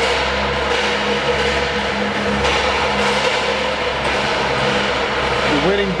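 Steady hum and hiss of background noise, with a constant mid-pitched tone running through it.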